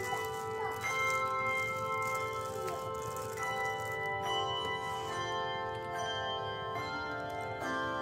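Handbell choir playing a piece: several handbells struck together in chords every second or so, each chord ringing on and overlapping the next.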